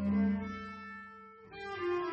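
Slow cello music: one long bowed note that fades away, then a new note begins near the end.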